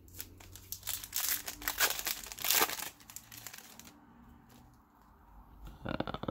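A trading-card pack's wrapper being torn open and crinkled by hand, a dense crackly rustle that is loudest about two and a half seconds in and then dies down.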